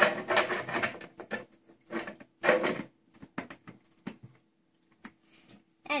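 Plastic top of a frog-shaped humidifier being handled: clattering knocks in the first second and again around two and a half seconds in, then a few light clicks, with a faint steady hum underneath.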